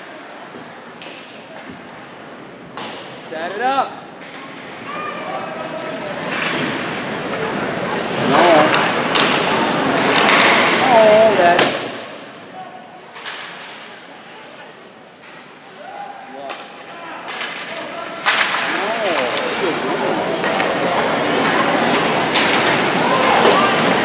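Live ice hockey heard from the stands: scattered shouts and voices from spectators over sharp knocks of sticks and puck and thuds against the boards. The crowd noise swells about eight seconds in and again over the last quarter.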